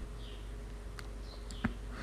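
Faint steady low hum, with two small clicks, one about a second in and one a little later.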